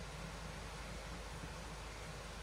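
Steady hiss of running creek water, even and unbroken, with no distinct events.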